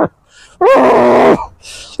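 A man lets out one loud, drawn-out vocal groan, unbroken for under a second, starting about half a second in.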